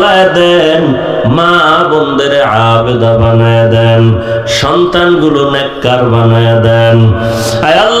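A man's voice chanting a drawn-out Islamic supplication into a microphone. He stretches "Ay… Allah" over long held, wavering notes, with a short break about half-way through.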